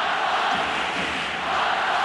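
Basketball arena crowd making a steady, loud roar of many voices during play.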